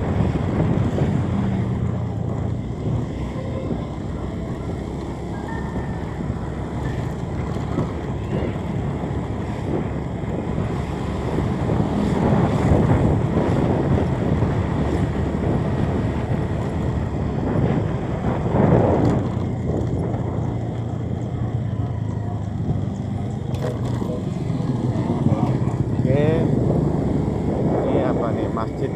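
Wind rushing over the microphone on a moving vehicle, over a steady engine rumble, with a brief louder swell about two-thirds of the way through.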